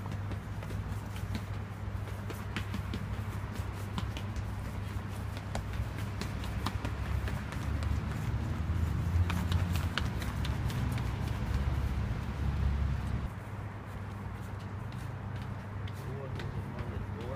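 Quick running footsteps on stone stairs, many short sharp steps in a row, over a steady low rumble on the microphone.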